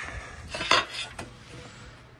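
A large glazed porcelain tile pulled from its stack, clinking and scraping against the hard tile and box as it comes free, with a few sharp knocks about a second in.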